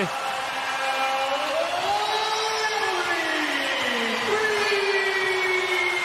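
A drawn-out call over the arena's public-address system just after a made three-pointer: one long, unbroken voice that rises slowly in pitch and then slowly falls, over the noise of the crowd.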